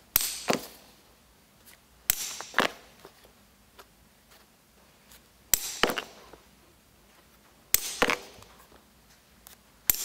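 Steel hollow hole punch struck with a ball-peen hammer, driving it through leather into an end-grain log block: sharp hammer blows in groups of two or three, a couple of seconds apart, as each hole is knocked out.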